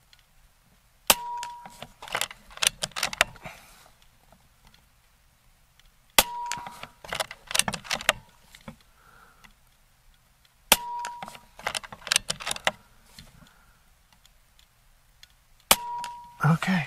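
Air Venturi Avenger Bullpup .22, a regulated PCP air rifle, fired four times, roughly every four to five seconds. Each shot is a sharp crack with a brief ring, followed by a quick run of metallic clicks as the side lever is worked to chamber the next pellet.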